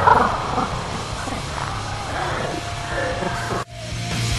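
Slowed-down soundtrack of a slow-motion replay: low, drawn-out growling sounds. They cut off abruptly near the end, and rock music starts.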